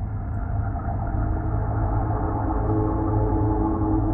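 Gong-like ambient music drone: several steady tones held together, slowly swelling in loudness.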